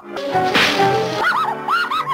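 Cartoon orchestral score with a sudden whip-like crack just after the start, followed by a run of short rising-and-falling wailing glides.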